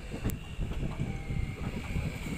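Passenger train running on the track, heard from on board: a low rolling rumble with wind buffeting the microphone and a thin steady high-pitched whine, and one sharp click about a quarter of a second in.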